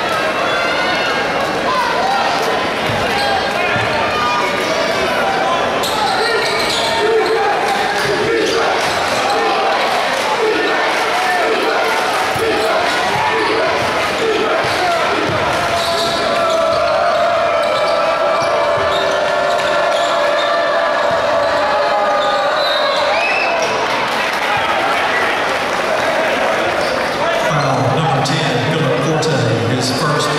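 Live basketball game in an arena: a ball dribbling on the hardwood court amid the steady chatter and shouts of the crowd, echoing in the large hall.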